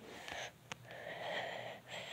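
Breathy, hissing mouth noises in two stretches, with a short click between them: a person making whooshing sounds for a toy plane swooped by hand.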